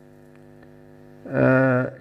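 Steady electrical mains hum in the sound system, then, about one and a quarter seconds in, a man's voice holding a drawn-out vowel at a steady pitch, a hesitation sound, for about half a second.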